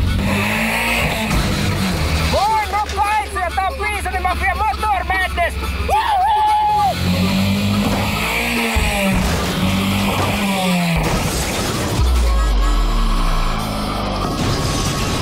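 Junk car's engine revving up and down as it is driven hard across a dirt yard, under background music with a melody; a heavy low rumble comes in about two seconds before the end as the car goes for the jump.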